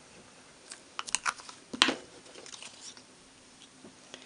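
Light clicks and taps from paper crafting by hand: a liquid glue bottle and cardstock strips handled, set down and pressed onto a work mat. There is a quick cluster of clicks just after a second in and the loudest tap comes about two seconds in.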